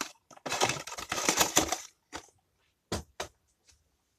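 Cardboard lamp packaging handled and cleared off a bench, a rustling scrape lasting about a second and a half, followed by four separate light knocks.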